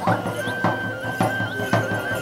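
Traditional music: a drum beats steadily about twice a second under a high, held melody line that steps between a few notes.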